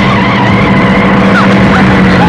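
A car braking hard, its tyres screeching on the road in a loud, continuous skid, over a steady low hum.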